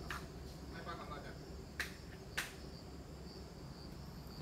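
Steady high-pitched insect drone, with two sharp clicks about two seconds in and faint voices in the background.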